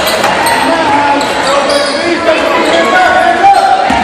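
A basketball being dribbled on a hardwood gym floor, under steady crowd chatter and shouting that echoes in the hall, with a sharper thump about three and a half seconds in.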